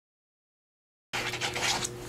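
Dead silence for about the first second, then hands handling and pressing paper on a tabletop, a soft rustling and scratching over a faint steady hum.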